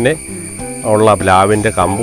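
A song with a voice singing held, wavering notes, over a steady high-pitched drone of insects.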